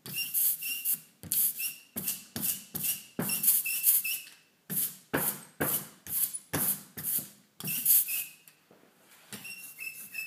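Hand ink roller (brayer) rolled back and forth through tacky printing ink on an inking slab, about two strokes a second. Each stroke is a sticky hiss with short squeaks. There is a quieter pause shortly before the end, then softer strokes.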